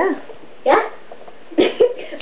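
A person's voice calling out short, sharp "¿Ya?" four times, bark-like bursts with quiet gaps between.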